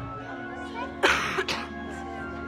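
A person coughing twice, about a second in, sharp and loud over background music of sustained held notes.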